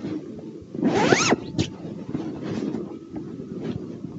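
A recording made at a post office counter, played back: muffled room noise with a few faint knocks. About a second in, a short sound rises and then falls in pitch.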